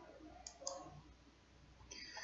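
Two quick computer mouse clicks about half a second in, faint over quiet room tone, as the next step of the software is selected.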